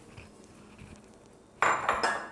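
A small glass bowl clatters against the counter as it is set down near the end, with a brief high ringing.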